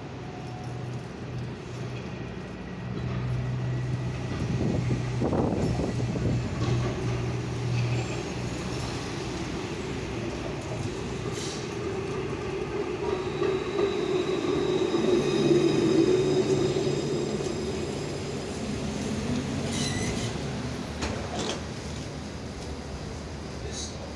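A C2-class Alstom Citadis tram approaching along the street and slowing to a stop at the platform. Its running noise on the rails grows to a peak about fifteen seconds in, with a thin high squeal of the wheels as it slows and a few sharp clicks.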